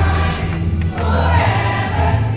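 Junior high show choir singing in several parts over an accompaniment with a strong, stepping bass line.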